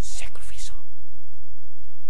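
A man's hushed, whispered words for under a second at the start, then a pause, over a steady low hum.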